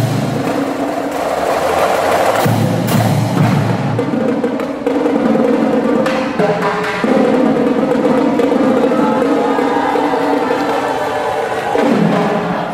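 Marching drumline playing a percussion cadence: rapid snare drum strokes and rolls with bass drum hits and cymbals, over a steady held drone from about five seconds in.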